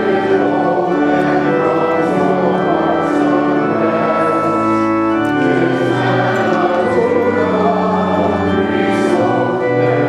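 Congregation singing a hymn with organ accompaniment, in long held chords.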